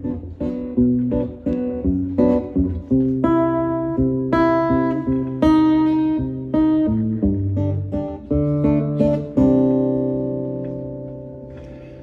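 Solo acoustic guitar playing the song's intro: a run of picked and strummed chords, with the last chord left ringing and fading away from about nine and a half seconds in.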